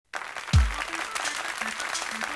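A deep falling electronic boom about half a second in, then audience applause with a few short low musical notes beneath it.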